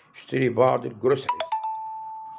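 A short electronic ding-dong chime: a quick falling run of two or three notes that rings on and slowly fades, following a man's speech.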